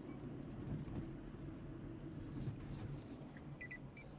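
Steady low rumble of a car heard from inside the cabin while driving.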